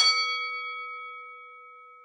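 A struck bell-like chime hit twice in quick succession, ringing on and slowly fading away, the high overtones dying first.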